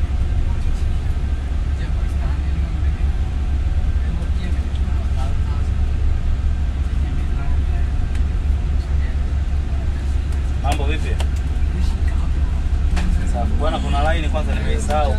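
Steady low rumble of a vehicle driving along a city road, heard from on board. Voices cut in briefly about ten seconds in and again near the end.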